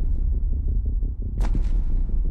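Film soundtrack: a loud, deep, steady rumble with one sharp hit about one and a half seconds in.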